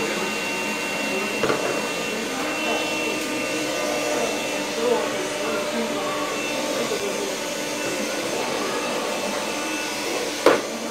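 Handheld vacuum cleaner running steadily, an even motor hum with a thin high whine, as it is pushed along a tiled floor.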